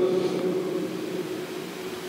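Steady background hiss and hum of a hall's microphone and sound system, with a faint low tone, slowly fading.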